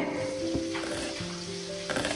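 Chef's knife cutting through an onion onto a wooden cutting board: a sharp knock of the blade on the board at the start, fainter cuts in between, and another clear knock near the end.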